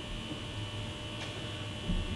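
Steady electrical mains hum with a thin high whine over it, with a faint click a little past the middle and a short low thump near the end.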